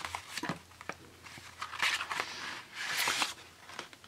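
Paper and card stock rustling and sliding as a handmade kraft-paper envelope with a card inside is handled, in two short bursts around the middle, with a few light taps.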